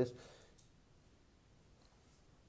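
A man's voice trailing off at the end of a word in a small room, then a pause of quiet room tone with a faint click about half a second in.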